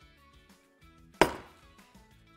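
Soft background music with held notes, and about a second in a single sharp metallic knock with a short ring as a stainless-steel kitchen scale is handled on the worktop.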